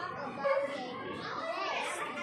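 A young girl's voice speaking, with other children's voices overlapping around her.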